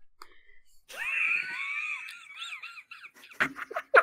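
A person's voice over an online voice call, garbled by a bad connection into a warbling, robotic sound, followed by laughter near the end.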